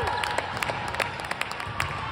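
Scattered hand clapping in a gym, a few claps at a time and dying down, with the tail of a shout falling in pitch right at the start.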